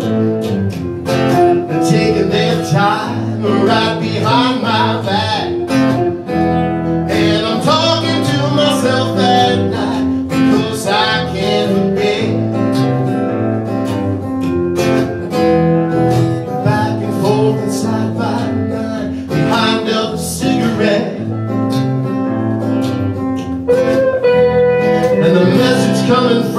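Live acoustic guitar music from a duo: guitars strummed and picked steadily, with a voice singing in places.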